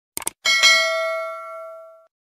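Two quick mouse-click sound effects, then a notification-bell ding that rings and fades away over about a second and a half, the sound effect of a YouTube subscribe-button animation.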